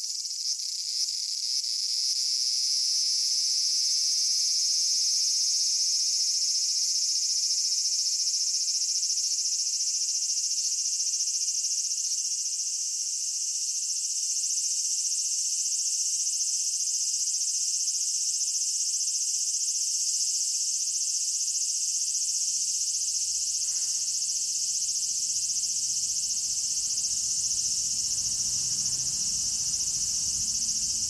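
Steady, high-pitched chorus of summer insects shrilling without a break, with a faint low hum coming in about two-thirds of the way through.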